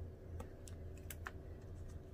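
Faint, scattered light clicks from handling an N95 respirator as its elastic head straps are pulled off, over a steady low hum.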